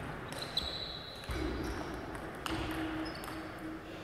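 Table tennis rally: the ball is struck by the rubber-faced paddles and bounces on the table, a handful of sharp, irregularly spaced clicks over a few seconds, with the last hit about three seconds in.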